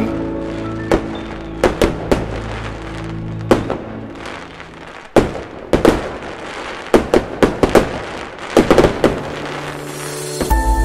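Fireworks going off: a string of sharp bangs and crackles, some in quick clusters, the densest run near the end. A sustained music chord holds underneath through the first half.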